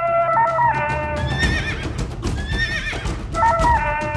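Title theme music with a steady beat, its melody broken from about a second in by two warbling high cries, a comic sound effect in the theme, before the melody returns near the end.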